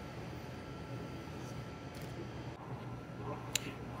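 Steady low background hum of room tone, with a faint steady tone, and one small click near the end.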